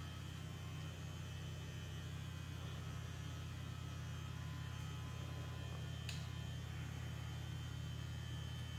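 Steady low electrical mains hum with a faint high whine above it, and one faint click about six seconds in.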